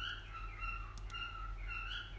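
Short high chirps repeating about twice a second over a steady low hum, with a couple of faint clicks about a second in.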